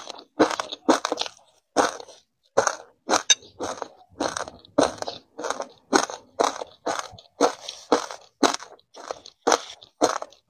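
Close-miked chewing of a mouthful of crunchy frozen ice granules, a crisp crunch about twice a second.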